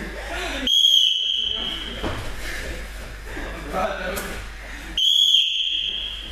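A high, steady signal tone sounds twice, each blast about a second long and about four seconds apart, marking the end of a grappling round in judo training. Voices talk between the blasts.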